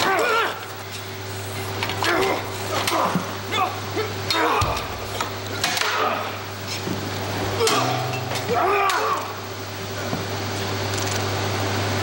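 Stage sword fight: a few sharp clinks of sword blades striking, amid shouts and voices, over a steady low hum.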